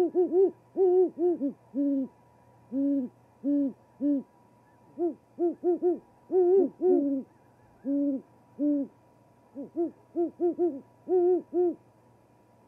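Two great horned owls hooting back and forth in a duet, one voice a little higher than the other. The deep hoots come in quick stuttered runs, separated by single hoots about a second apart.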